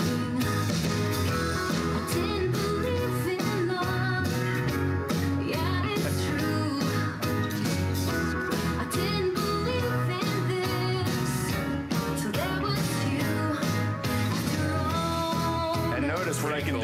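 Bose Wave Music System IV playing a song with singing and guitar over a steady beat, turned up loud (the display reads volume 81–82) to fill the room.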